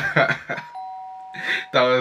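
A two-note falling chime, like a doorbell ding-dong: a higher steady tone followed by a lower one that overlaps it, each ringing for about a second, under a man's laughing voice.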